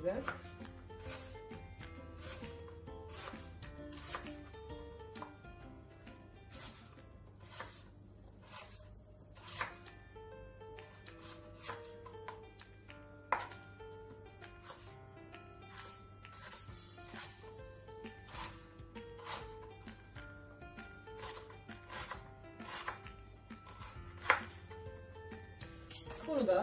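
Kitchen knife slicing an onion on a plastic cutting board, one cut about every second, each a short sharp tap of the blade on the board.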